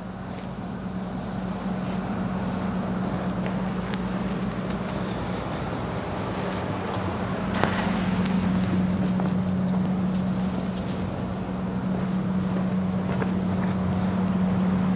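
A steady machine hum with one strong low tone, growing slightly louder, with a few faint clicks.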